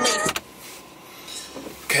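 Steady, quiet car-cabin hum with a thin, steady high tone.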